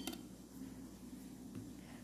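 Quiet room tone with faint handling noises and no distinct impact.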